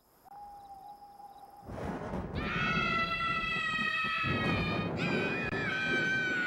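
Children screaming with delight: two long, high screams one after the other, starting about two seconds in, over music.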